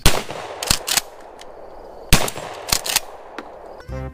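Pump-action shotgun fired twice, about two seconds apart. Each loud shot is followed by two sharp clacks, the forend being racked back and forward to chamber the next shell.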